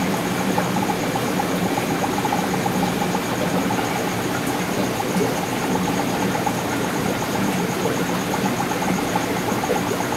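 Aquarium air bubbler and tank equipment running: a steady bubbling and hum with an even, faint pulsing.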